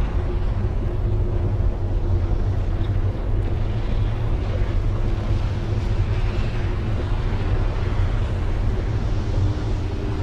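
A steady low rumbling noise with a faint held tone underneath.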